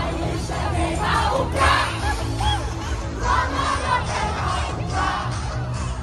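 Crowd of young people shouting and cheering together over loud dance music with a heavy bass.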